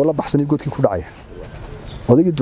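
A man speaking in short phrases for about a second, then a quieter pause of about a second.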